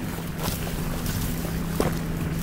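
A single-engine propeller plane drones steadily, with a brief crackle of dry cornstalks being pushed through near the end.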